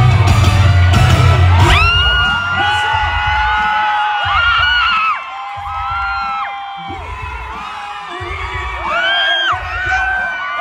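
Live concert music over a PA system, with a heavy bass beat that drops out about two seconds in. A concert crowd then screams and whoops, with short returns of the bass.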